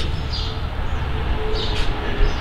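Steady low outdoor rumble with a few faint, short high-pitched blips.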